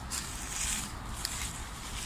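Soft rustling and scuffing from someone moving about and handling material, a few short rustles over a steady low background hum.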